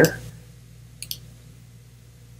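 Two quick computer mouse clicks about a second in, over a faint steady hum.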